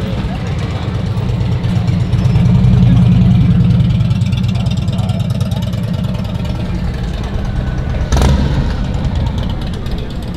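A car engine idling steadily, swelling a little a couple of seconds in, with one sharp knock near the end.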